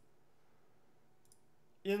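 Near silence: quiet room tone with one faint, short click about a second and a half in, then a man starts speaking just before the end.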